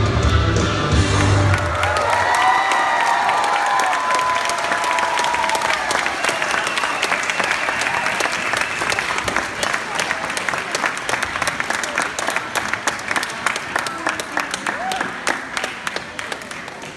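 Dance music cuts off about a second and a half in, and an audience applauds and cheers. The clapping slowly dies down toward the end.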